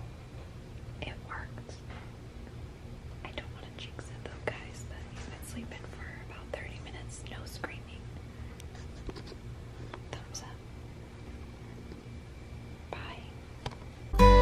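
Soft whispering in a dark room, in short scattered bits over a steady low hum.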